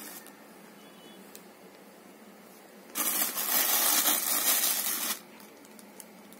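Chiffon saree fabric rustling as it is handled and laid out, one loud swishing rustle of about two seconds that starts about three seconds in and stops abruptly.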